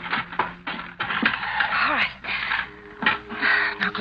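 Radio-drama sound effects of a body being bundled into a trunk: scuffling and a run of sharp knocks, with straining breaths. Low sustained music notes play underneath.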